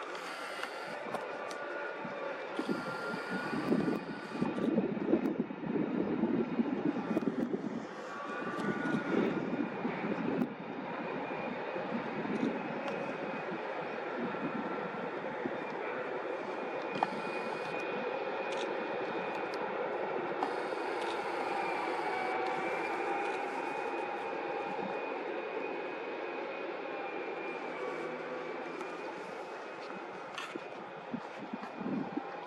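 Heavy construction machinery running steadily, a mechanical drone carrying a thin whine that slowly rises and falls. Rougher, louder bursts come and go in the first ten seconds or so.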